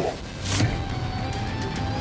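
Dramatic background music: a sudden hit about half a second in, followed by long held high notes.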